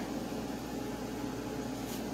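Steady background hum and hiss of a small room, with no distinct event.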